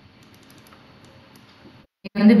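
Faint clicking at a computer, keys or mouse, over low room noise. The sound cuts out completely for a moment near the end.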